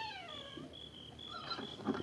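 Radio-drama sound effect of a wolf howling: one long falling wail that dies away about half a second in. After it comes a faint, evenly spaced chirping of crickets.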